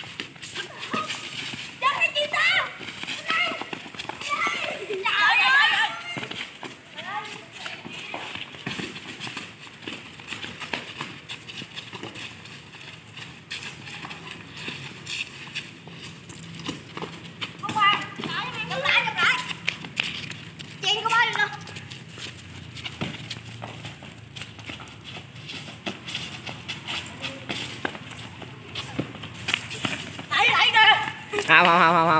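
Boys' voices calling out now and then during a football game. Many small taps and slaps of running feet and sandals on hard ground run through it, with the odd kick of the ball.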